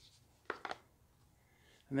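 A small box being opened by hand, its lid pulled off the base: two short taps close together about half a second in.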